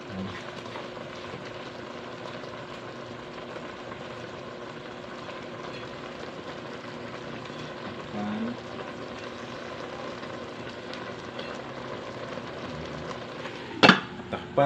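Steady hiss of sliced eggplant simmering in a little water in an open aluminium pot on the stove, ending with a sharp clank as the aluminium lid is set back on the pot.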